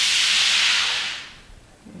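A hiss of noise that fades away about a second in.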